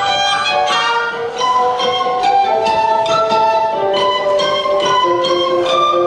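Orchestra with strings playing a melody of held notes.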